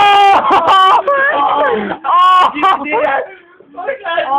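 Loud, strained voices laughing uncontrollably, with a long held high wail near the start and short breathless bursts after it.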